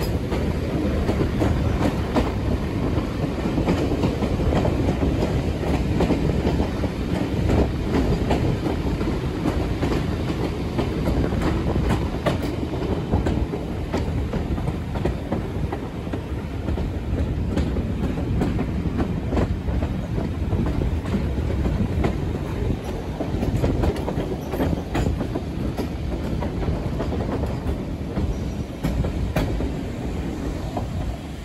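Heritage railway coach running along the track, its wheels rumbling steadily with scattered clicks over rail joints and pointwork.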